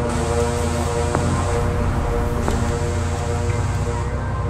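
A low, steady rumble like a car's cabin at idle, under sustained droning tones, with a sharp tick about every second and a half.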